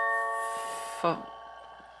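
Music box of a musical revolving cake stand playing its tune. Several notes start together and ring on, fading away over about a second.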